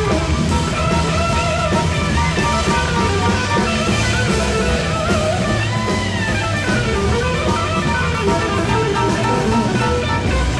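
A blues-rock band playing live, an instrumental passage: a lead electric guitar line with bent notes over drums and low accompanying notes.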